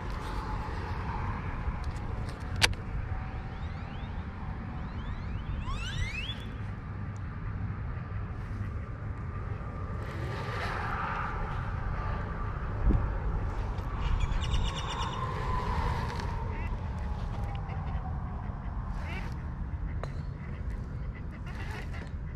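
Wind rumbling on the microphone of a camera worn outdoors, with scattered bird calls over it: a rising call about six seconds in and a quick run of pulsed calls near the middle. A single sharp click sounds about three seconds in.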